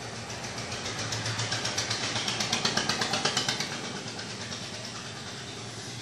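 A small engine running, with a rapid, evenly spaced ticking over a steady low hum that swells to its loudest about two to three seconds in and then fades away.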